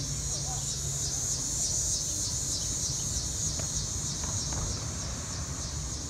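Insects chirping in a steady pulsing chorus, a few high pulses a second, over a low rumble.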